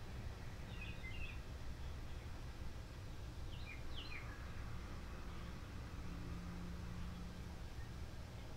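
Quiet outdoor background: a steady low hum with a few faint bird chirps, about a second in and again around three and a half to four seconds in.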